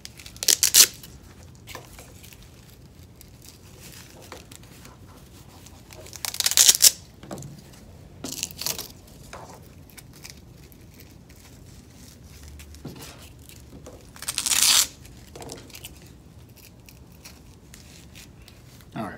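Velcro hook-and-loop ripping in several short bursts a few seconds apart as abrasive pads are pulled off and pressed onto the Velcro strips of a window-cleaning brush, with quieter handling rustle between.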